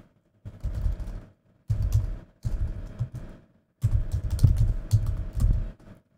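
Typing on a computer keyboard: three runs of rapid key clicks separated by short pauses.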